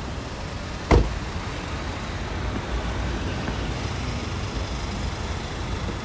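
Road traffic at a busy city intersection: cars idling and driving past close by, a steady low rumble. One sharp knock about a second in stands out above it.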